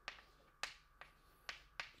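Chalk tapping and scratching on a blackboard while writing: a handful of short, sharp clicks, the loudest a little over half a second in and two more near the end.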